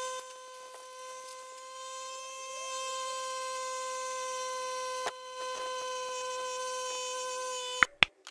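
A steady buzzing tone held at one pitch, cutting off suddenly with a click near the end.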